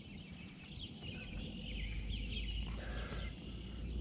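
Birds chirping and calling in quick, overlapping chirps, over a low steady rumble.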